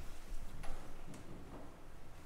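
A few light ticking clicks, spaced about half a second apart, over low room noise.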